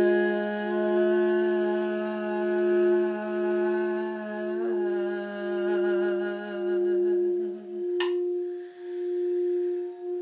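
Crystal singing bowl tuned for the heart chakra, rubbed around the rim with a mallet so it sings one steady tone with a slow wobble. A woman's voice holds long notes over it, shifting pitch once about halfway, and stops about three quarters in. Just after that comes a single sharp click, and the bowl rings on alone.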